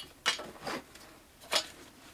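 Clicks and rattles of an auto-locking strap buckle and its webbing being worked on a tree stand: four short, sharp sounds, the loudest about a third of a second in.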